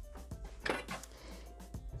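Background music, with a light metallic clatter and scrape as the stainless-steel mixing bowl of a Thermomix is lifted out of its base about two-thirds of a second in.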